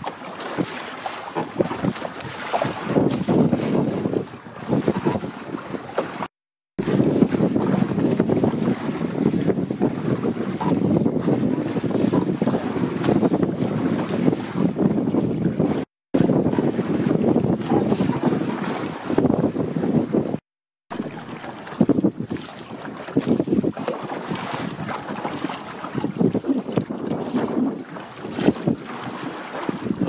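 Wind buffeting the microphone over water rushing and slapping against the hulls of a small trimaran sailboat under way in choppy water, gusting louder and softer. The sound drops out completely three times, briefly, at cuts in the footage.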